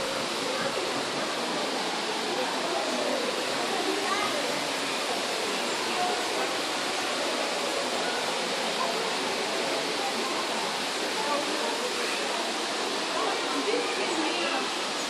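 Steady rushing of falling water, like an artificial waterfall in a planted enclosure, with indistinct voices murmuring in the background.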